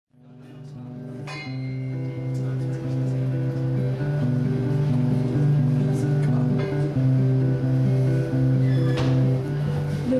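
Acoustic guitar playing a picked instrumental intro to a song, a steady run of changing notes that fades in over the first second or two.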